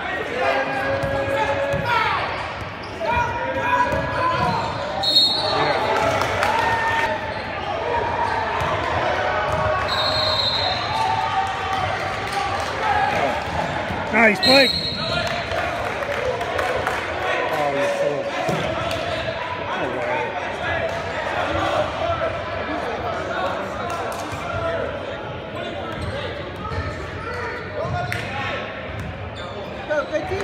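Basketball game in a large echoing gym: a ball bouncing on the court amid the voices of players and spectators. Three brief high-pitched tones cut through at intervals.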